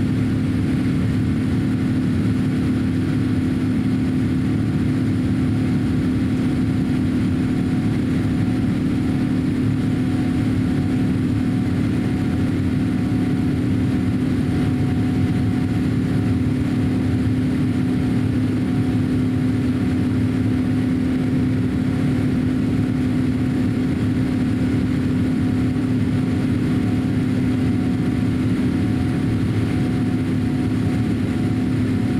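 Cabin noise inside a Boeing 787-8 airliner climbing out after takeoff: a steady drone of its Rolls-Royce Trent 1000 turbofan engines and the airflow, with a constant low hum.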